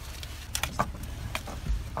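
Steady low rumble of a truck idling, inside the cab, with a handful of sharp clicks and knocks as a bow and gear are handled and a heavier thump near the end.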